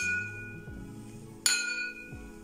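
Two glass tumblers clinked together: the clear ring of one clink fades at the start, then another sharp clink about a second and a half in rings on with high, steady tones.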